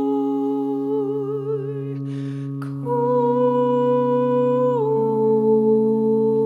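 A woman's voice humming long held notes with a slow wavering vibrato over a steady low drone. A breath about two seconds in, then a new, slightly higher note held and stepping down near the end.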